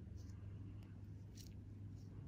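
Faint steady low hum of room tone, with two soft brief ticks, one just after the start and one about a second and a half in.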